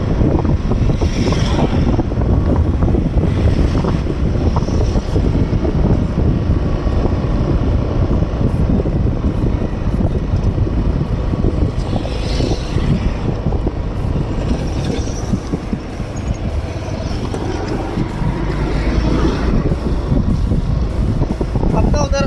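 Loud, steady wind rumble on the microphone of a moving camera, mixed with road noise.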